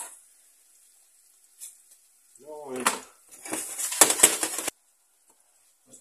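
Clatter and rustle of bread slices and a kitchen knife handled on a plastic cutting board, about a second of it with sharp clicks, stopping abruptly. Onions frying in oil in the pot sizzle faintly underneath.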